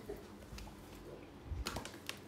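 Faint handling noise from the phone that is filming, with a short cluster of clicks and light knocks about one and a half seconds in, as the phone is moved around.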